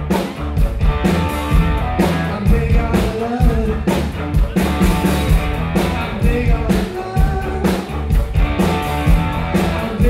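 Live rock band playing: drum kit keeping a steady beat of about two hits a second, electric guitars and keyboards, with a man singing lead.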